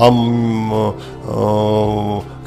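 A man's drawn-out hesitation hum, "amm", held at one steady pitch for about a second, then held again after a short break.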